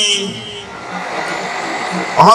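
A man's voice through a microphone, ending a phrase about half a second in, followed by a pause filled with steady background noise.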